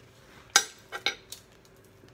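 A fork clicking against a plate: four short, sharp clinks, the loudest about half a second in and the rest close together around a second in.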